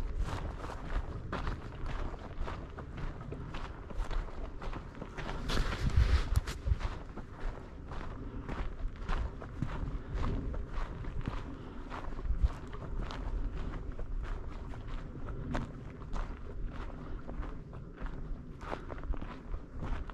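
Footsteps crunching on dry, gravelly desert ground and scrub at a steady walking pace, about two steps a second.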